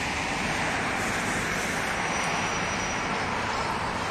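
Steady outdoor background noise: an even rushing roar with a low rumble, holding at one level throughout.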